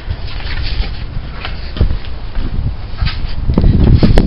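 Rumble and knocks of a handheld camera being moved about outdoors, loudest near the end as it is swung round.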